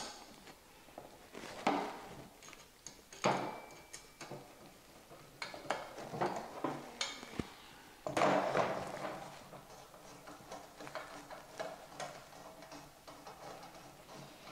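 Intermittent light clicks and scrapes of small metal hardware: stainless screws and square nuts being fitted and turned with a screwdriver into a thin aluminium plate. A longer scraping rustle about eight seconds in as the aluminium loop element is shifted on the table.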